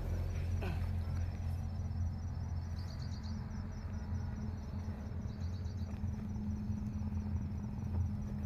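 A steady low hum like an idling engine, with a couple of short runs of faint high chirps about three and five and a half seconds in.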